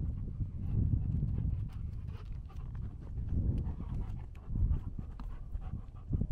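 A Giant Schnauzer panting close by while walking, with footsteps crackling on a stony path and a low, uneven rumble of wind on the microphone.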